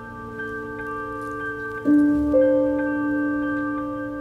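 Soft background music score of slow, held notes, with new notes struck about two seconds in.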